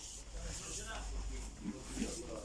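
Quiet, indistinct talk with a low steady hum underneath.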